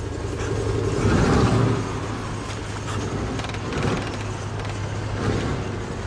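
A steady low, engine-like rumble that swells loudest about a second in and rises again twice more near the end.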